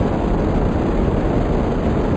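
Rocket-launch sound effect: a loud, steady, deep rushing rumble of rocket engines at lift-off.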